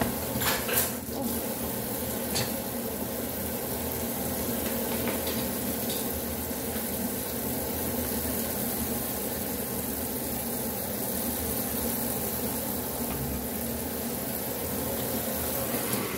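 Kitchen tap left running, water pouring steadily into a stainless steel sink, with a few light clicks in the first couple of seconds.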